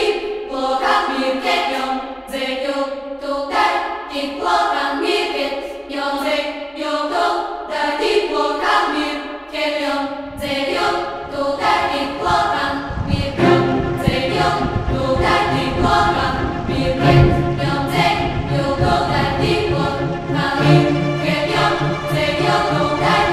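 Composed music led by sampled choir voices in Bulgarian folk-choir style, singing sustained, overlapping chords. About ten seconds in a deep low layer joins beneath the voices, growing fuller from about thirteen seconds.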